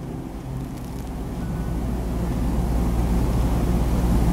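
Low steady rumble of wind on the microphone, growing gradually louder.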